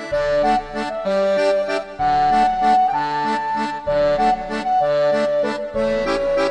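Accordion playing a traditional folk tune, a melody in held notes over an alternating bass and a steady beat.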